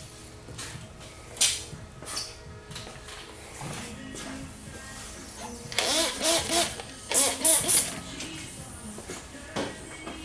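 Hand trigger spray bottle squirting liquid onto paint protection film on a headlamp: a couple of single squirts early, then two quick runs of three or four squirts each about six and seven and a half seconds in, the loudest sounds. Background music plays under it.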